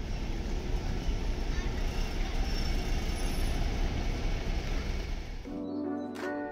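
City-centre street noise: a steady traffic rumble with a single-decker bus driving slowly past. Plucked guitar music comes in near the end.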